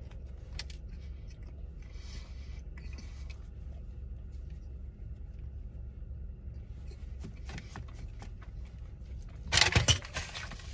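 Steady low rumble of a car cabin, with small wet clicks and smacks of a man licking glaze off his fingers and chewing a cinnamon roll. A brief louder rustle comes near the end.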